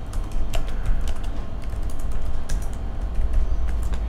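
Computer keyboard typing: a run of quick, irregular key clicks as a command is typed into a terminal, over a steady low hum.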